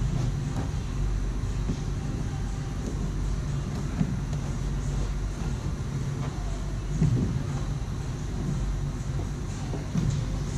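A steady low mechanical hum runs throughout, with a few faint knocks from hands working around the kayak's plastic hull about four and seven seconds in.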